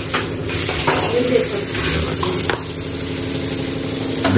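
A dosa sizzling steadily on a hot tawa griddle over a gas burner, with one short clink about two and a half seconds in.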